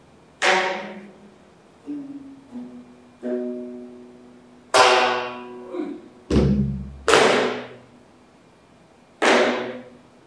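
Geomungo, the Korean zither, plucked with its bamboo stick in slow, spaced strokes; each sharp attack rings and fades, and a few notes bend in pitch as the string is pressed. A deep stroke on a buk barrel drum comes about six seconds in.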